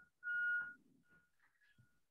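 A short, steady, high-pitched whistle-like tone lasting about half a second near the start, followed by a few much fainter blips at the same pitch.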